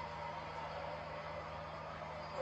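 Steady background hiss with a low, constant electrical hum.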